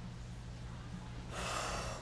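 A short, sharp intake of breath about one and a half seconds in, just before a spoken 'wow', over a faint steady low hum.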